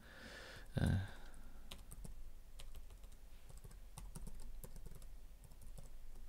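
Typing on a computer keyboard: quick, irregular key clicks. A short low thump just under a second in is the loudest sound.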